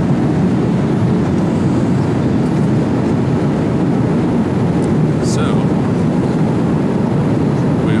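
Steady roar of an airliner cabin in flight, the engine and airflow noise heard from a passenger seat.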